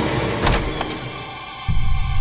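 Tense background score for a TV drama: a sharp whooshing hit about half a second in, a lighter second hit just after, and a loud deep rumbling swell that comes in suddenly near the end.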